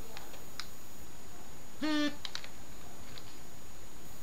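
Faint clicks and taps of hands handling a tablet, with one short pitched tone about halfway through.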